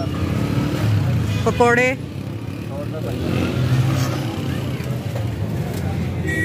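Busy street noise: traffic running steadily, with people's voices over it and a short spoken or called phrase about one and a half seconds in.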